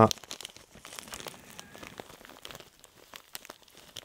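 Soft, irregular crinkling and crackling of a silver tinsel dubbing brush (EP Brush) being handled as a length of it is worked off.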